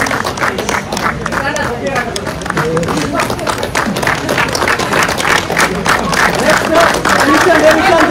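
A small group clapping steadily, with voices shouting and cheering over the claps.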